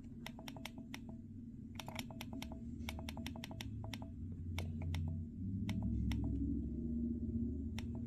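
Flipper Zero directional-pad button clicked repeatedly while scrolling down a menu. The clicks come in quick bursts of two to five, each with a short ring.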